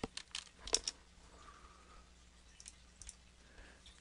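Faint keystrokes on a computer keyboard: several quick taps in the first second, then two more about three seconds in.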